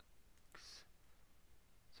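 Near silence: room tone with a faint low hum and one brief, faint hiss about half a second in.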